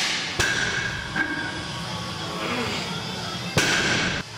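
Barbell loaded with rubber bumper plates set down on the gym floor between deadlift reps: a sharp knock about half a second in, a lighter one about a second later, and a louder one near the end.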